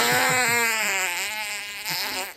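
A man blowing hard into the inlet of a small pressure gauge, making one long wavering buzzing tone as the air is forced through, a test of whether the gauge needle will respond.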